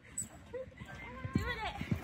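A horse's hooves thudding on the sand arena as it canters past close by, the beats starting about halfway through. A high-pitched, excited squealing cry sounds over the hoofbeats.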